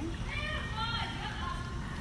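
A high-pitched voice calling out with drawn-out, rising and falling pitch, over a steady low rumble.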